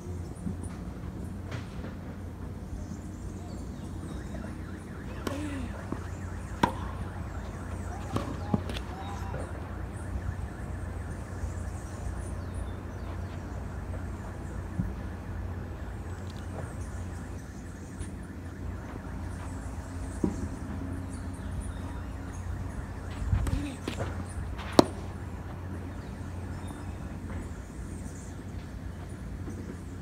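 Tennis balls struck by rackets and bouncing on a hard court: scattered sharp pops, a cluster in the first third and another just past the middle, the loudest about 25 seconds in, over a steady low outdoor rumble.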